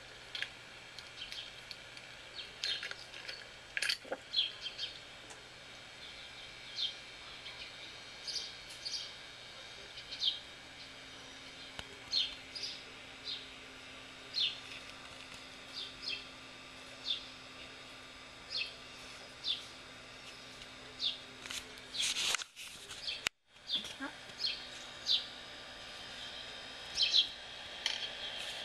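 Short bird chirps repeating about once a second, coming from a garden-squirrel video playing on a tablet's small speaker, with a few sharp clicks in the first few seconds.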